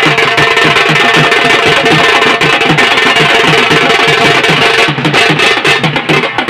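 A gaaje-baaje welcome band playing loud, fast drumming with a steady, even beat.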